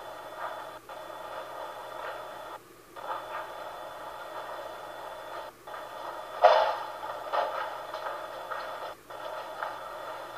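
Video baby monitor's speaker giving out a steady hiss of transmitted room sound. The hiss cuts out abruptly several times, and there is a single louder sound about six and a half seconds in.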